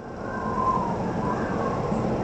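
A steady rushing, rumbling noise swells up over the first half second and then holds, with a faint wavering tone above it.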